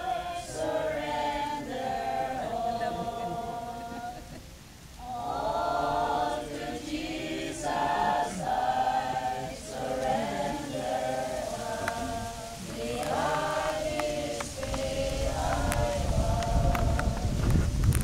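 A congregation of mixed voices singing a hymn together in phrases, with a short break about four seconds in. A low rumble builds up under the singing near the end.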